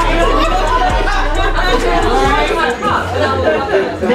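Many people talking at once, a babble of overlapping voices, over background music with a steady bass.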